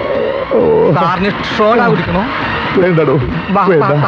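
Men speaking in raised, excited voices, with the pitch swinging up and down.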